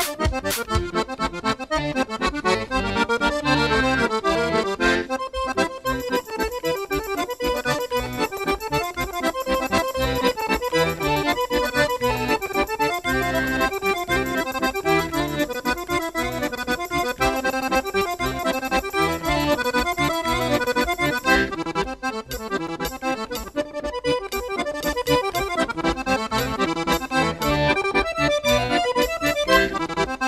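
Accordion playing a lively Portuguese traditional dance tune over a steady, regular beat.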